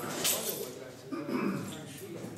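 Speech: a man talking at a lectern.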